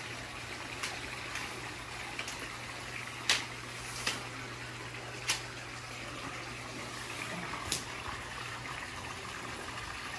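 Steady rush of running water with a low steady hum beneath it, broken by about five short, sharp clicks.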